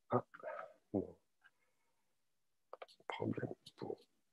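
Quiet, halting speech: a hesitant 'uh' and a few short murmured voice fragments separated by pauses.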